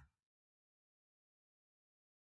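Near silence: a dead audio feed, with only a brief faint noise right at the start. The shared video is playing without any sound coming through.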